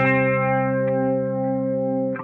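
Distorted electric guitar chord struck once and left to ring, held steady for about two seconds with the drums dropped out.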